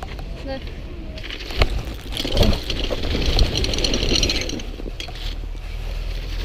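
Bicycle tyres rolling and scraping over packed snow, loudest between about two and four and a half seconds in, with a single knock shortly before and wind rumbling on the microphone throughout.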